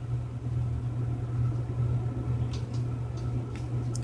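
A steady low mechanical hum, with a couple of faint clicks late on.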